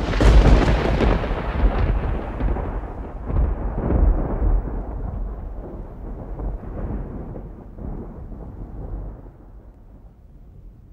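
Thunder: a rolling rumble that starts suddenly and loud, swells again a couple of times, and fades away over about ten seconds.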